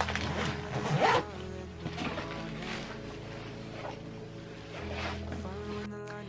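Zipper on a Wandrd PRVKE fabric backpack being pulled shut in several short strokes about a second apart, with soft background music underneath.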